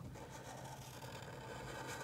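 Black Sharpie marker drawing a circle on paper, a faint, steady scratching of the felt tip.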